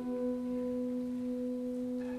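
Solo cello holding one long, soft bowed note, steady in pitch, tapering slightly toward the end.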